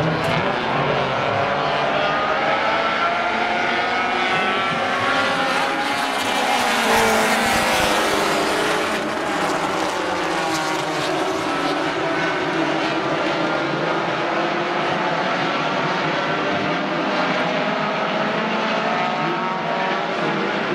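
A pack of four-cylinder dash-series stock cars racing around a paved oval track. Many engines run at once, their pitch rising and falling as they accelerate and pass, loudest about seven seconds in as the pack goes by.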